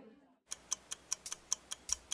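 Clock-like ticking sound effect for an animated loading screen: sharp, evenly spaced ticks about five a second, starting about half a second in.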